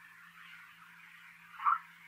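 Pause in a recorded talk: a steady low hum and faint hiss from the recording, with one brief faint sound near the end.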